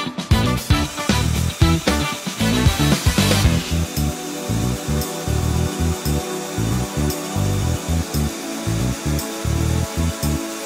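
Background music with a steady beat. From about three and a half seconds in, a steady drilling sound runs under it: a Bosch cordless drill turning an Expert HEX-9 Hard Ceramic carbide-tipped bit, boring dry through a clay roof tile without hammer action.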